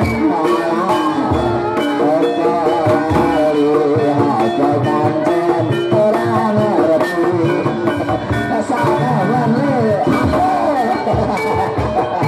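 Javanese gamelan-style barongan accompaniment: drums beating steadily under sustained pitched percussion tones and a wavering melody line.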